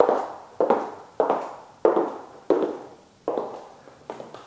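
Footsteps on a hard floor, about six steps spaced roughly 0.6 s apart, each a sharp knock with a short ring in the room, growing fainter near the end.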